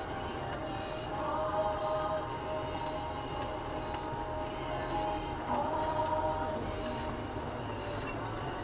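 Inside a slowly driven vehicle on a dirt road: low engine and road rumble with held, wavering musical tones over it and a faint high tick about once a second.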